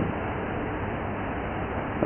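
Steady background hiss of the recording, with no distinct sounds in it.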